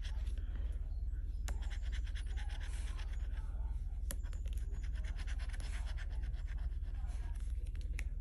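A handheld scraper tool rubbing the scratch-off coating from a paper lottery ticket in fast, continuous strokes, with a couple of sharper clicks. A steady low hum sits underneath.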